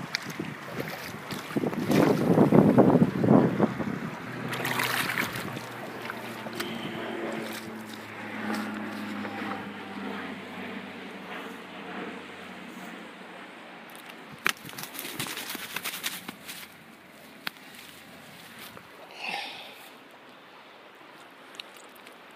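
Fast-flowing river water rushing, with wind buffeting the microphone strongly a couple of seconds in and a few sharp handling knocks later on.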